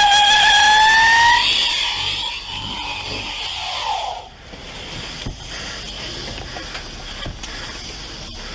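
SUV tyres screeching as the wheels spin under hard throttle. A loud rising squeal in the first second and a half, a shorter falling squeal near four seconds, then a steady hiss of spinning tyres and engine.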